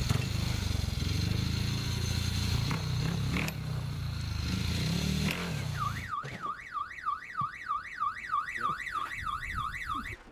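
Small motorbike engine running and revving unevenly, dying away about six seconds in. Then an electronic alarm warbles quickly up and down in pitch, about three sweeps a second, and cuts off suddenly.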